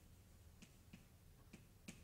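Near silence with a few faint, short taps of writing on a board, about four in two seconds.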